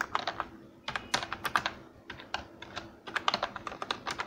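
Typing on a computer keyboard: quick key clicks in several short bursts, with brief pauses between them.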